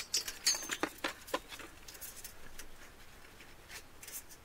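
Steel clock mainspring being wiped with a cloth soaked in mineral turps: a quick run of light clicks and ticks as the thin spring strip flexes and rubs, densest in the first second and a half, then sparser and fainter.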